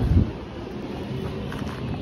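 Wind buffeting a phone's microphone, loudest in the first moment, then settling to a steadier low rumble.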